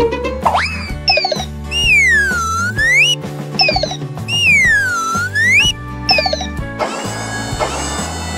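Upbeat children's cartoon music with a repeating bass line, overlaid with comic sound effects. A slide-whistle rise comes about half a second in, then two long swooping tones that dip in pitch and climb back, and short falling whistles. Near the end a sustained reedy synth chord takes over.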